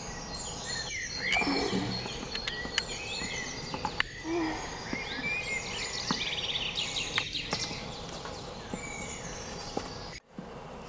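Many small birds chirping and calling over one another above a steady background hiss, like a woodland ambience, with a few sharp clicks.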